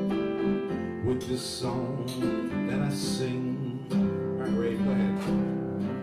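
Acoustic guitar strummed through a song in C, with an electric keyboard playing along.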